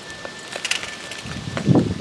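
Gritty potting mix laced with crushed oyster shell tipped out of a bowl into a plastic hanging pot: a few light clicks, then a short rattling pour about a second and a half in.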